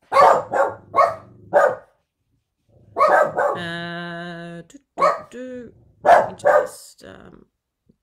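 Pet dogs barking: four quick barks in a row, a longer held call in the middle, then two more barks.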